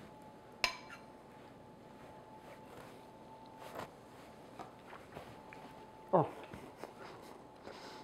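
A metal spoon clinks sharply against a ceramic bowl once, about half a second in, followed by a few faint taps of the spoon in the bowl. A short murmured vocal sound comes about six seconds in.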